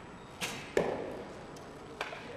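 Recurve bow shot: the string's release snaps about half a second in, and a louder knock follows about a third of a second later as the arrow strikes the target.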